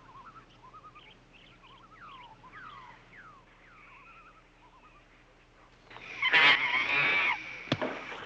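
Faint bird-like calls, a few short falling chirps, over quiet outdoor ambience; then about six seconds in, a sudden loud, rough and shrill commotion lasting about a second and a half as the chimp knocks a man down, followed by a sharp knock just before the end.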